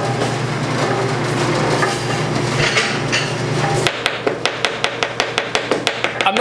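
Commercial stand mixer with a vegetable slicer attachment running with a steady hum, a machine that has been walking lately. It stops abruptly about four seconds in, and then a knife chops fast on a cutting board, about five strokes a second.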